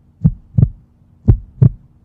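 Heartbeat sound effect: paired thumps, one pair about every second, heard twice here, over a faint steady hum.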